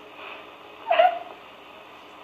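A man's short whimpering sob, once about a second in, a comic cry over the faint hiss of an old film soundtrack.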